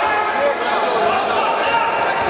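Basketball bouncing on a wooden hardwood court as it is dribbled, in a gym full of voices from players and spectators.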